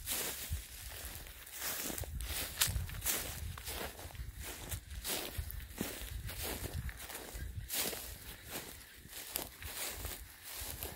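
Footsteps of a person walking through dry grass and field stubble, a crunch and swish at each step at a steady walking pace of about two steps a second.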